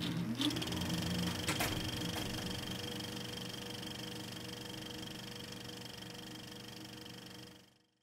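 Sound effect for a production-company logo: a short rising tone at the start and a couple of sharp clicks, then a steady hum of several held tones over a hiss that slowly fades and cuts off just before the end.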